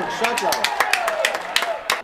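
Scattered hand claps from a few spectators in a small crowd, about a dozen irregular claps, with a drawn-out shout under them; the sound cuts off suddenly at the end.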